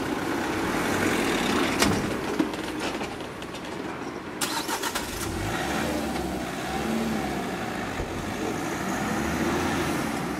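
An Opel Zafira minivan taxi drives past close by and pulls away, its engine and tyres running over the street noise. Sharp knocks come about two seconds in, and a quick clatter of clicks follows near the middle.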